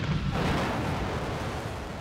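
Sound-effect asteroid impact explosion: a wide rushing blast with a deep rumble underneath that swells about a third of a second in and slowly dies down.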